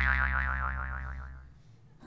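Cartoon 'boing' sound effect for a banana wipe transition: a single twanging note that wobbles in pitch and fades out over about a second and a half.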